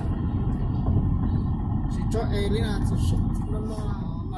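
Steady low road and engine rumble inside the cabin of a car cruising at highway speed. A person talks over it from about two seconds in.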